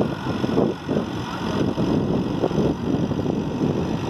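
Engine of a wooden river ferry boat running steadily as the boat pulls away from the bank and gathers speed.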